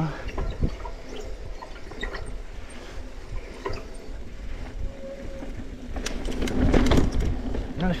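Mountain bike rolling down a dirt trail: wind rumbling on the camera microphone with tyre noise on the dirt and scattered clicks and rattles from the bike. It gets louder about six seconds in as the bike speeds up.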